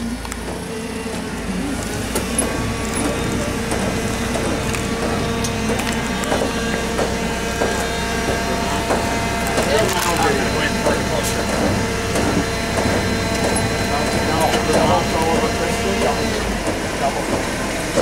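Propane-powered Toyota forklift engine running, with a steady hydraulic whine as the mast lifts a loaded grape bin on its rotator. The whine stops shortly before the end.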